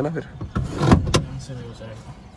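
A person moving about inside a car cabin: a rustle of clothing against the seats about half a second in, then a sharp knock about a second in.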